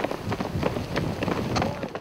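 A group of people running in boots on an asphalt road, their footfalls many and overlapping.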